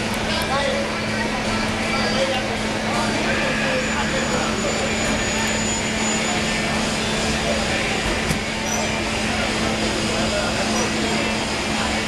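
Steady outdoor street ambience: traffic noise and the chatter of people nearby, under a constant low hum.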